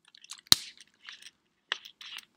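A sharp click about half a second in, the loudest sound, and a second click near the end, with small crackling noises between.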